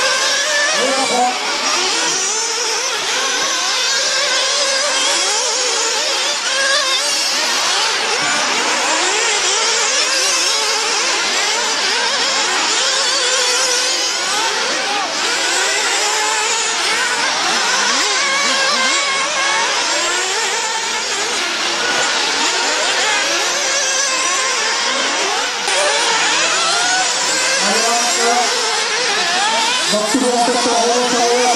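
Several 1/8-scale RC off-road buggies racing, their small nitro engines revving up and easing off over and over as the cars take the corners and straights, many engine notes overlapping.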